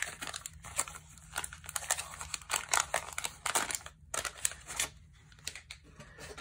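The wax-paper wrapper of a 1990 Fleer basketball card pack being torn open and crinkled by hand, an irregular run of sharp crackles.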